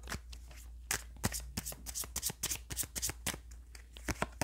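Tarot deck being shuffled by hand: an irregular run of soft, quick card clicks and rustles.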